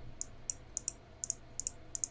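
Computer mouse clicking about eight times in an irregular run, each click light and sharp, as points are placed to draw a mask.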